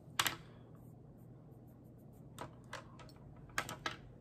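Several short, sharp clicks and taps of makeup products and brushes being handled: a loud double click just after the start, two lighter taps around the middle, and a quick run of clicks near the end, over a faint low hum.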